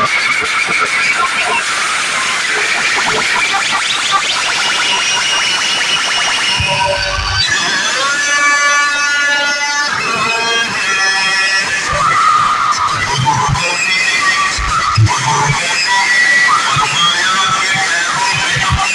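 Music played very loud through DJ truck speaker stacks, with the voices of a dense crowd mixed in. A steady pitched note is held for about two seconds midway.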